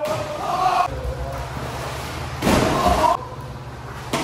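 Young men shouting and calling out, echoing in a tiled indoor pool hall, with a loud splash into the pool water about two and a half seconds in, lasting under a second.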